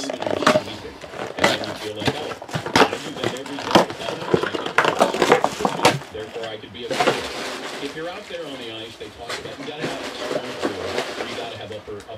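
Indistinct background talk with many sharp clicks and rustles through the first half, then quieter.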